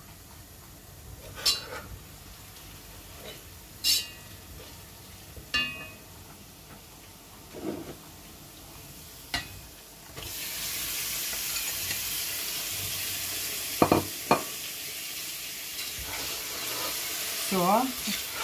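Light clinks and knocks of a utensil on cookware. About ten seconds in, a sudden loud sizzle starts as meat goes into a hot oiled pan, then keeps frying steadily. Two sharp knocks come a few seconds later.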